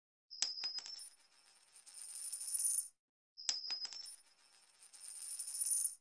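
Channel-logo sound effect played twice: a quick run of sharp metallic clinks with a high ringing tone, then a high shimmering sound that swells and cuts off.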